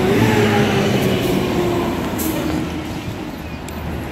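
City street traffic: the running engine of a passing vehicle, its hum gliding slowly down in pitch over the first couple of seconds, over a steady wash of traffic noise.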